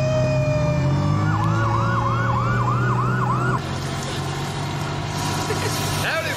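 Fire engine sirens with a low engine rumble underneath. A slow wailing siren rises and falls throughout, and a faster yelping siren sweeps about three to four times a second. The rumble and the yelp stop about three and a half seconds in, leaving a quieter wail.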